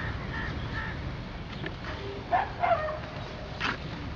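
Steady outdoor background noise with a few short distant animal calls, two of them about two and a half seconds in.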